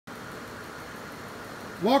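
A steady, even background hum, with a man starting to speak near the end.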